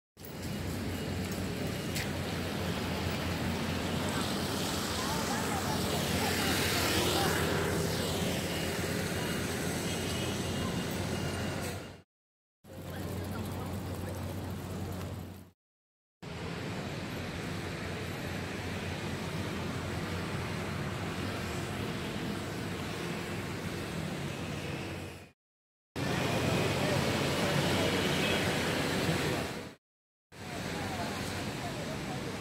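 Street ambience of road traffic and indistinct background voices, in several short stretches separated by brief silent cuts. A vehicle passes about seven seconds in.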